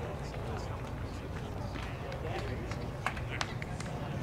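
Outdoor ballpark ambience: distant voices and chatter over a steady low rumble, with a few sharp clicks about three seconds in.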